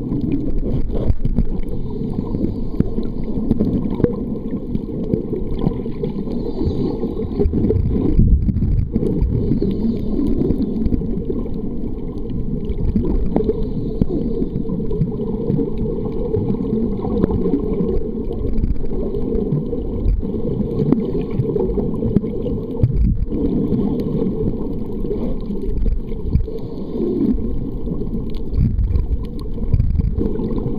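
Muffled underwater sound from a camera submerged in water: a steady low rumble of water moving around the camera, with nothing sharp or pitched standing out.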